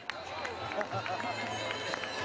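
Marathon finish-line crowd: a general din of spectators' voices calling and cheering, with a few scattered sharp claps.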